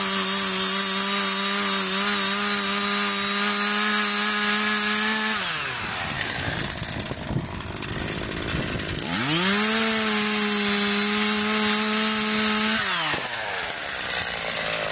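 Two-stroke chainsaw held at high revs while cutting at the base of a tree trunk. About five and a half seconds in it drops to idle, revs back up about three and a half seconds later, and drops to idle again near the end.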